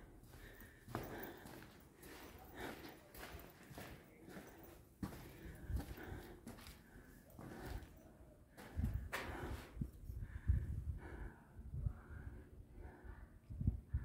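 Soft, irregular footsteps on a stone cave floor with the rustle and knocks of a handheld camera. A few heavier thuds come about nine to eleven seconds in.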